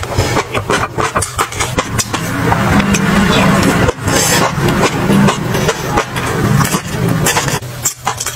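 Close-miked chewing of a sesame-coated food: a dense run of crackly crunches over a low steady rumble, breaking off briefly about halfway through.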